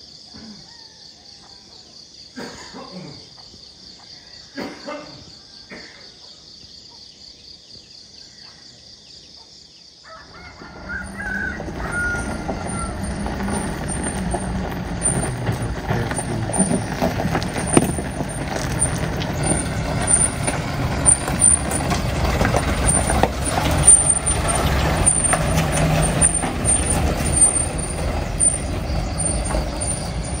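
A steady high-pitched drone with a few short calls. Then, from about ten seconds in, a Mitsubishi Fuso Colt Diesel minibus's diesel engine comes in loud and stays loud as the vehicle drives up and passes on the gravel road.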